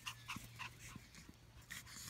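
Small Pomeranian-type dog panting in quick, short breaths, about three a second.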